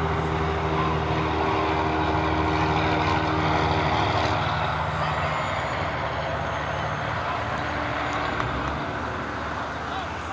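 A passing engine: a steady motor drone with several held tones, the higher ones dropping out about four seconds in, growing slowly quieter toward the end.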